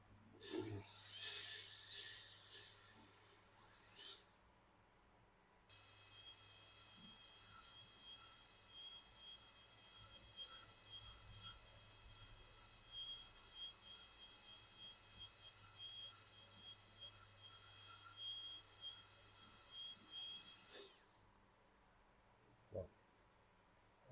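High-speed air-turbine dental handpiece cutting the palatal margin of a typodont upper incisor for a full-crown preparation. There are two short hissing bursts near the start, then a high, steady whine that pulses in loudness as the bur touches and lifts off the tooth, stopping about a second before the end.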